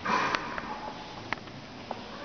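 A man's short, sharp sniff close to a lectern microphone right at the start, followed by a few faint clicks.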